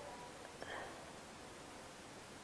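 Faint steady microphone hiss, with one brief soft whisper-like vocal sound a little over half a second in.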